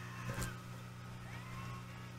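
Faint steady electrical hum, with a brief click about half a second in.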